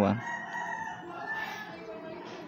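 A faint, drawn-out animal call in the background lasts about a second and a half, just after a word of speech.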